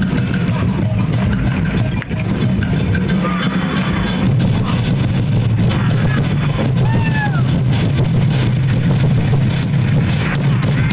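Loud, dense din of a street dance performance: a steady low rumble of festival drumming and crowd noise. A short curving whistle-like call sounds about seven seconds in.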